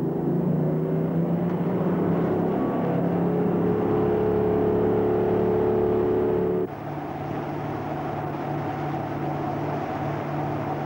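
Tyne-class lifeboat's diesel engines running hard at speed, a steady drone whose note steps up a little a few seconds in. About two-thirds of the way through, the sound changes abruptly to a slightly quieter, lower engine drone.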